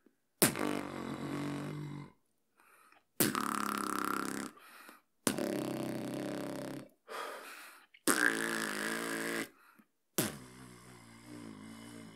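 Inhaled sub-bass (808) lip roll by a beatboxer: five separate sustained, pitched lip-roll notes of about a second and a half each, each starting with a sharp hit, with short gaps between them.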